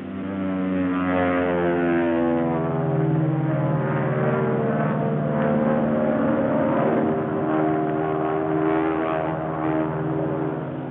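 Propeller aeroplane engine droning steadily, its pitch shifting a little lower over the first few seconds.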